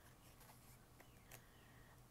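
Near silence with a few faint, short clicks and rustles of tarot cards being handled and laid on a cloth, over a faint steady low hum.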